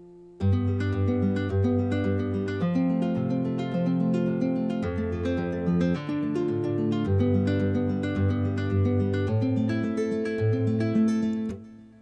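UJAM Virtual Guitarist Silk, a nylon-string acoustic guitar virtual instrument, plays a picked guitar pattern driven by EZ Keys 2 chord input. It moves through chords including F major and D minor, and its notes now sound because the input has been raised two octaves into the instrument's chord range.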